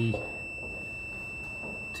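A steady, unbroken high-pitched electronic tone, one held pitch, under a pause in speech.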